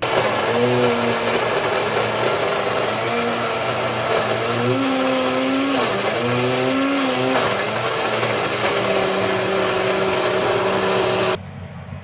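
Electric countertop blender running, grinding a thick chili and tomato paste; its motor pitch wavers up and down as the load shifts. It stops abruptly near the end, leaving a quieter steady hiss.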